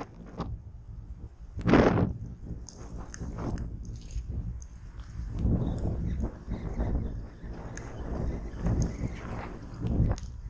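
Wind buffeting the camera's microphone: a steady low rumble with a loud gust about two seconds in and softer swells later, with faint scattered ticks over it.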